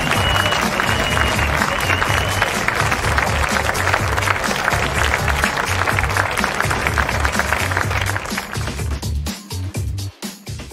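Intro music with a steady pulsing bass over crowd applause, with a few short whistles in the first couple of seconds; the applause and music thin out near the end.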